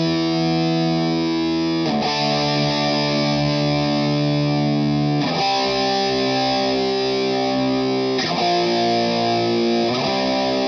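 Electric guitar played with distortion: slow held chords that ring out, with a new chord struck about every three seconds, three changes in all.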